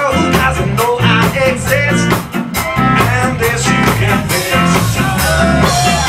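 Live ska band playing: drum kit, upright bass, Hammond organ and horns, with a man singing lead.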